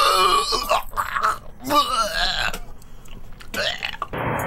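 A man roused from sleep groaning and grunting without words, in three stretches: a long one at the start, another in the middle, and a short one near the end.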